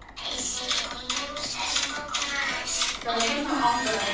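Music from a played-back phone video, mixed with clattering and knocking throughout.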